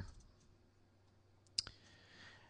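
Near silence: faint room tone, broken by one short, sharp click about a second and a half in, with a fainter tick just after it.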